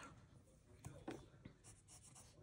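Faint scratching of a colored pencil on paper: a few short strokes starting about a second in, otherwise near silence.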